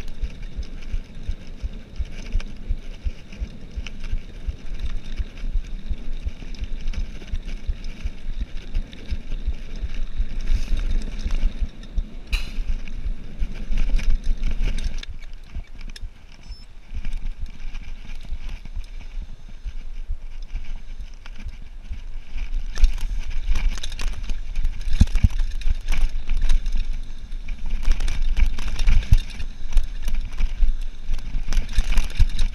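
Cannondale Trail 7 mountain bike riding a rough dirt trail: tyres rumbling over the ground, wind buffeting the camera microphone, and the bike rattling and knocking over bumps. It eases off for a few seconds around the middle as the bike slows and coasts, then grows rougher, with many sharp knocks near the end as speed picks up again.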